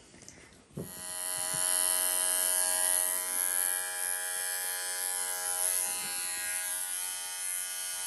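Electric dog-grooming clippers switching on about a second in, then running with a steady buzz as they trim a puppy's coat.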